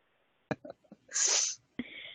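A faint click, then a short hiss lasting about half a second, a little past the middle.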